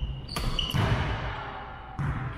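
Badminton rally: a sharp racket hit on the shuttlecock from an overhead jump shot, then a thud of the player landing on the hardwood floor with a short shoe squeak, and another crisp hit near the end. The sounds echo in the large gym.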